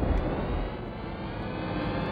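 Edited transition sound for a TV segment bumper: a dense, droning swell that starts loud and whose pitch slowly climbs as it builds toward the show's theme music.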